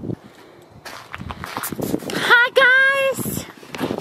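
Footsteps crunching on gravel, then a loud, high, wavering drawn-out vocal call about two seconds in that lasts just under a second.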